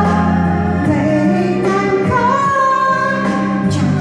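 A woman singing a slow Chinese ballad into a microphone over recorded musical accompaniment, holding long notes.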